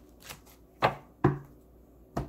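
A tarot card deck being shuffled by hand: a few sharp card clicks, the two loudest close together around the middle.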